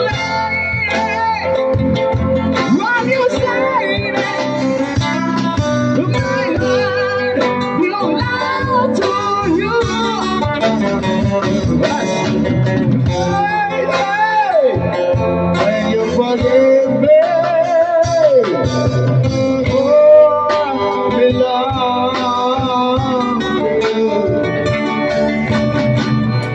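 Live amplified street-band performance of a rock ballad: acoustic and electric guitars play under male vocals sung into microphones, with the singers trading lines. The voice slides between notes and holds a long, wavering high note about two-thirds of the way through.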